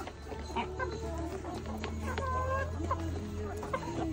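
A flock of brown laying hens clucking and calling as they eat at a feeding trough, some calls short and some drawn out, with scattered sharp clicks of beaks pecking at the feed.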